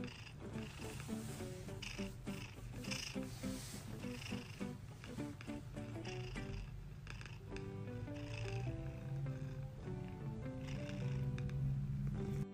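Domestic cat purring steadily as it is stroked on the head and chin, a low continuous rumble, with a soft melody of background music playing over it.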